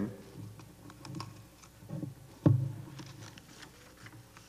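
Faint scattered clicks and taps, with a small low thud about two seconds in and one louder, sharp low thump about half a second later.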